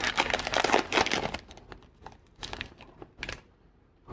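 Foil wrapper of a basketball trading-card pack crinkling as it is opened by hand: a dense crackle for about a second and a half, then a few short rustles near the end.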